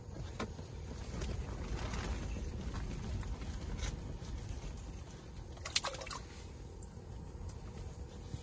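Low, steady rumble of strong wind buffeting a fabric ice-fishing shanty, with one sharp click about six seconds in.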